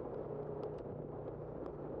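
Engine of an Amtrak California coach bus humming steadily close by as a bicycle rides past it, over steady wind and road noise from the ride.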